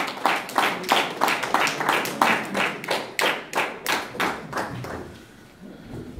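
Small audience applauding, with distinct hand claps about three a second that fade out about five seconds in.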